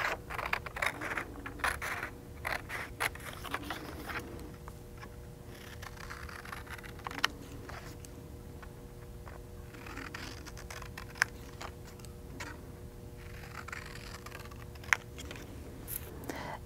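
Scissors snipping through printed card stock, with paper handling: a quick run of snips in the first few seconds, then occasional single snips, over a faint steady hum.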